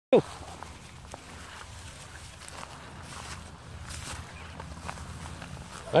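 Footsteps and rustling through tall dry grass: a steady swishing with faint scattered snaps.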